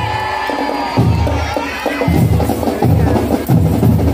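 Marching band drumline of bass and snare drums beating a driving rhythm, pausing briefly at the start and coming back in about a second in. A crowd cheers over the first two seconds with high calls that slide downward.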